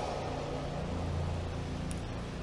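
A steady low hum with a faint click near the end.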